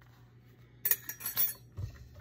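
A brief burst of rattling and clinking from a mixer-grinder jar holding toasted sesame seeds, under a second long and starting almost a second in, then a low thump.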